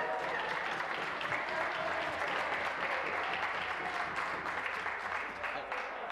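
Legislators applauding in the chamber, a steady spread of many handclaps.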